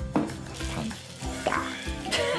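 Crackling rustle of thick coily hair being pulled apart and sectioned by hand, over soft background music with sustained tones.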